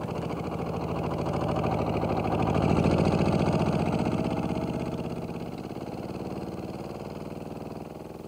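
Small garden tractor's engine running as it tows a trailer loaded with tomato boxes, with an even, rapid firing pulse. It grows louder over the first three seconds, then fades.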